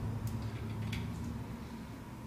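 Two faint clicks of a Phillips screwdriver working the armature-cap screws of a pellet stove auger gear motor as they are snugged down, over a low steady hum.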